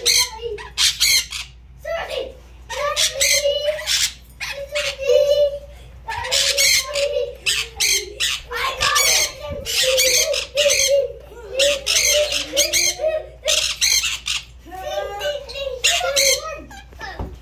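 Pet parrots squawking: many short, harsh calls in quick succession, over lower warbling chatter.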